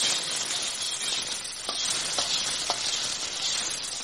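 Sizzling of a stir-fry in a steel wok as boiled noodles drop onto the hot oil and vegetables, the sizzle growing louder as they land. Three light clicks of the metal utensil against the pan come near the middle.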